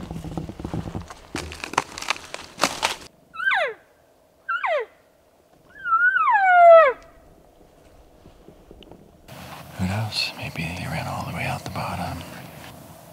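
Footsteps through dry brush, then three cow elk calls about a second apart: high, nasal mews that slide steeply down in pitch. The last call is the longest and loudest, with a short rise before it falls.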